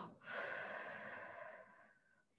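A woman breathing out slowly through the mouth: one long, airy exhale that fades away over about a second and a half.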